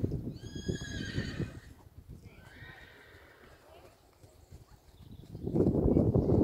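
A horse whinnies about half a second in, a high call lasting about a second, then a fainter, shorter call follows about two and a half seconds in. A low, uneven rumble fills the first second and a half and comes back loudly near the end.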